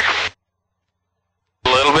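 A man's voice over an aircraft headset intercom, with a low engine hum under it, cuts off to dead silence a fraction of a second in; about a second later the voice and hum come back.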